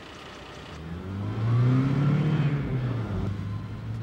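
Car engine revving up as the car pulls away, rising from about a second in to its loudest, then settling into a steady hum.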